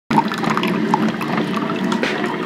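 Coffee streaming from a Black+Decker drip coffee maker into a ceramic mug, a steady trickling pour.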